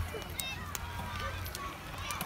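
Faint voices in the background over a low rumble of wind on the microphone, with a few light clicks.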